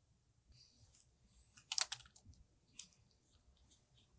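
Faint clicks from hands working the wire-feed head of a spool gun as the wire is pushed into the tube behind the drive roller: a quick cluster of three clicks just before two seconds in, then a single click about a second later.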